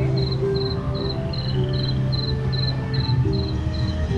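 A high, cricket-like chirp repeating evenly about two and a half times a second, over slow low music notes and a steady low hum.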